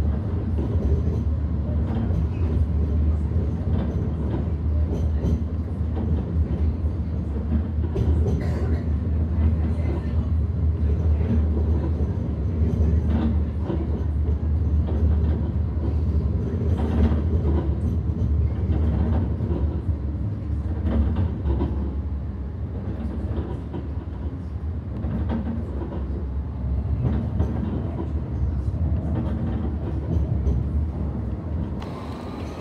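Alstom Citadis X05 light rail tram running on its rails, heard from inside the passenger cabin: a steady low rumble with occasional clicks and knocks. It eases off a little for a few seconds past the middle, then picks up again near the end.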